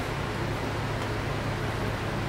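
Steady room tone: a constant low hum with an even hiss over it, and no distinct events.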